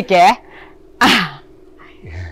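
A person's voice: a short voiced sound at the start, then about a second in a brief breathy vocal burst with falling pitch, over a faint steady hum.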